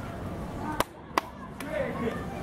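Two sharp clicks less than half a second apart, over steady background noise that dips briefly between them.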